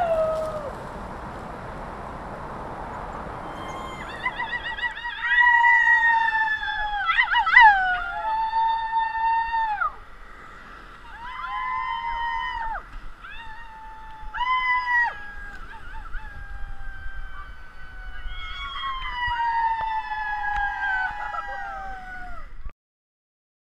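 Steady rushing noise for the first few seconds, then a run of howls: held, pitched notes about a second long, many ending in a downward slide, with several howls overlapping and falling together near the end.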